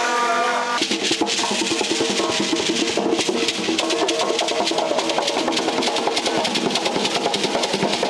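Djembe drums played fast by supporters, a dense run of strokes that starts about a second in.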